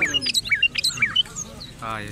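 Caged songbirds chirping: a quick run of short whistled notes, several a second, that thins out about two-thirds of the way through.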